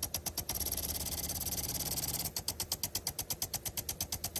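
Impact sprinkler spraying water, its arm ticking. There is a steady spray hiss with faint rapid ticking at first, then from a little past the middle a clear, even ticking at about eight ticks a second.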